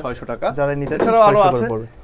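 A man's voice: a few short syllables, then one long, drawn-out, wavering vocal sound lasting over a second.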